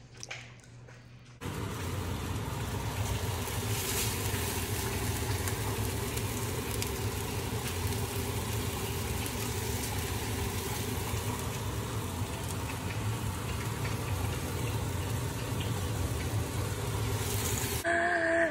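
Marinated beef slices sizzling in a hot frying pan: a steady hiss with a low hum underneath, starting abruptly about a second and a half in.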